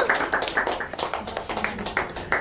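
A few people clapping by hand, several claps a second and not in step.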